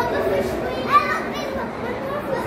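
Children's voices and chatter in a busy public space, with one child's short high-pitched cry about a second in.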